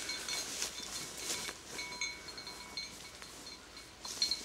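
A small bell on a hunting dog's collar tinkling in short, irregular rings as the dog moves through cover, over rustling of dry brush. The rings thin out near the end.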